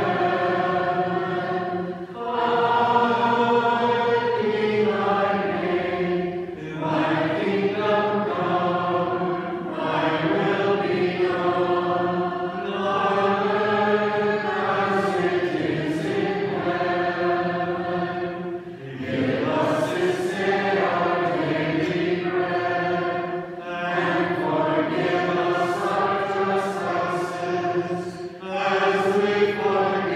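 Choir singing Orthodox liturgical chant unaccompanied, in long sustained phrases with short pauses between them every few seconds.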